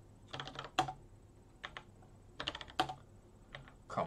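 Typing on a computer keyboard: about four short bursts of keystrokes with brief pauses between them.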